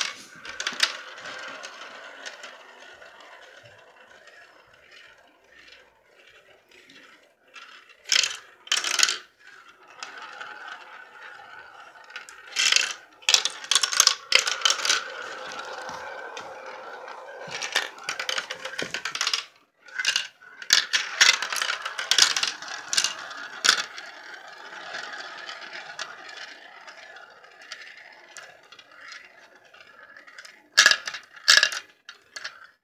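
Marbles rolling and spinning around the plastic funnels of a toy marble run, a steady whirring rumble broken several times by bursts of sharp clicks and clatters as they drop through the funnel holes and strike the track pieces.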